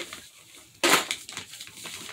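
A sheet of paper rustling and crinkling as a child handles and folds it on a cardboard box, with one loud crinkle about a second in.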